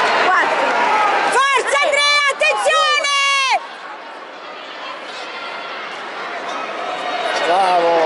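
Several loud, high-pitched shouts between about one and a half and three and a half seconds in, the last one held longest. A lower, steady murmur of the crowd follows, and voices rise again near the end.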